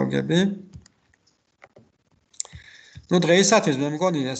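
A man speaking, with a pause of about two seconds in the middle in which a few faint, sharp clicks are heard.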